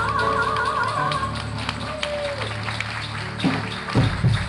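A woman's held final note of an Okinawan folk song (shimauta), sung with wide vibrato, ends about a second in over a steady low accompaniment. Scattered taps and claps follow as the song closes.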